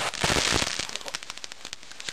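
Large firework mortar going off: a loud burst, followed by a rapid run of sharp crackles that thin out over the next second or so.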